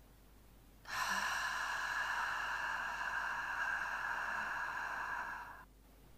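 A woman's long, steady exhalation pushed out through the lips as an 'fff' sound, starting about a second in and lasting about five seconds before fading out. It is the slow, controlled out-breath of a diaphragm-strengthening breathing exercise.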